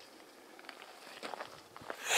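Faint footsteps and shuffling on dry, gravelly desert ground, with a few soft clicks.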